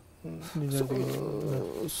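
A man's voice holding one drawn-out hesitation sound for about a second and a half, its pitch level and dropping slightly at the end.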